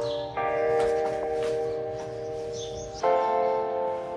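Bell-like chimes: sustained chords of ringing tones, each struck sharply and left to fade, with one starting just after the beginning and another about three seconds in.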